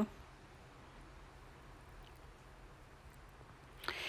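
Near silence: faint room tone with no distinct sound.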